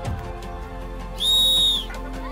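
Soft background music with steady held notes. Just over a second in, a single shrill whistle blast, steady in pitch and lasting under a second, is the loudest sound.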